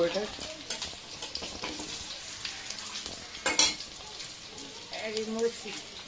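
Boiled eggs and sliced onions frying in hot oil in pans on a gas stove, sizzling and crackling throughout, with one brief sharp burst about three and a half seconds in.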